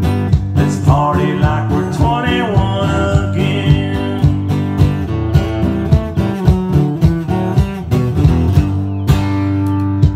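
Acoustic guitar strummed in a live country song, with a steady beat from a foot-operated drum and a sung vocal line over it.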